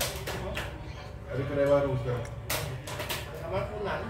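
Voices of people talking in the background during a meal, with a few sharp clicks or taps.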